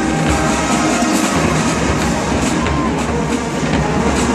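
A large HBCU show-style marching band playing loudly: brass holding full chords over the drumline's steady beat.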